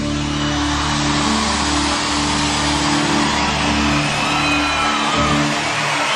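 A live pop band holding its closing chords, with steady bass and keyboard notes shifting about once a second, under a large crowd cheering and applauding. Shrill whistles from the audience rise and fall in the second half.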